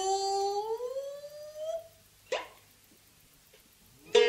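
A female gidayū chanter's long held note sliding upward and fading out, then a single sharp shamisen stroke about two seconds in, followed by a pause of near silence.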